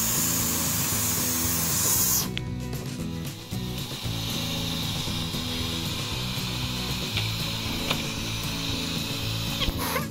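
Vacuum cleaner drawing the suction for a hobby vacuum-forming machine, running loudly and then cutting off sharply about two seconds in. Background music plays throughout.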